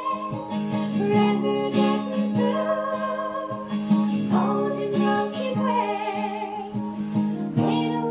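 Acoustic folk band music from a 1995 live home tape: acoustic guitar strummed steadily under a wavering lead melody line.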